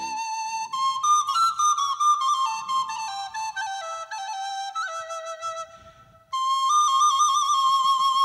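Solo wooden end-blown flute playing a slow folk melody: a stepwise falling phrase, a brief pause, then a new phrase with quick trilled ornaments.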